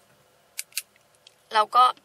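Two brief, high scratchy sounds about a quarter second apart, about half a second in, followed near the end by a woman starting to speak.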